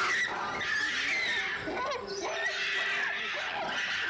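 Shrill, wavering monkey screeching, a sound effect blaring from cell phones, ear-blasting and played turned down, over a steady low hum.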